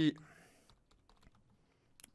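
Faint typing on a computer keyboard: a scatter of soft key clicks as a word is typed.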